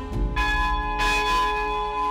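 A church bell struck twice, about a third of a second and a second in, each stroke's tones ringing on and overlapping.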